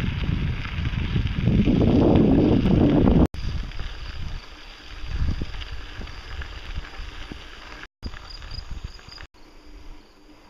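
Wind buffeting the microphone while riding a bicycle, loudest in the first three seconds. After a sudden cut it gives way to quieter, uneven rolling noise of the bike on a gravel trail.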